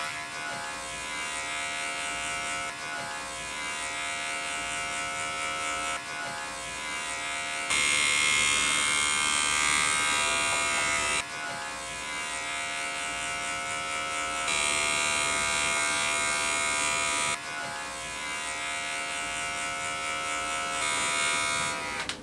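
Manscaped Lawn Mower 2.0 electric trimmer running with a steady motor hum while trimming a rabbit's fur, stepping up louder and brighter three times for a few seconds each.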